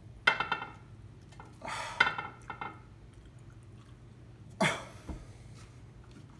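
Short, loud breathy huffs and mouth noises from someone chewing a full mouthful of food, with a short grunt near the end, against the burn of hot sauce; a sharp click about two seconds in as the food and plate are handled.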